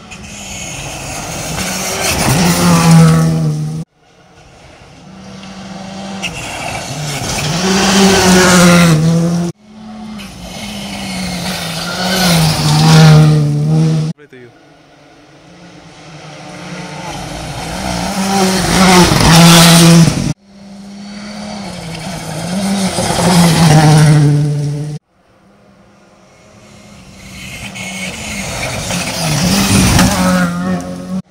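Rally cars approaching one after another at full throttle, each growing louder, its engine pitch swinging up and down through the gears, then cut off suddenly as it reaches the car's pass; about six cars in turn.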